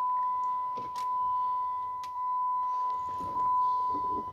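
2006 Dodge Charger's dashboard warning chime holding one steady high tone: the driver's door is open with the ignition on. A couple of faint clicks sound against it.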